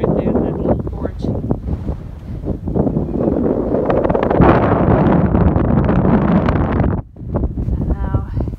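Strong wind buffeting the microphone: a loud, rough rushing that swells in gusts, heaviest a few seconds in, and drops out briefly near the end.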